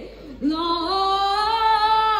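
A boy's unbroken voice singing live into a microphone. About half a second in, after a brief drop, he slides up into one long note and holds it, with little instrumental sound under it.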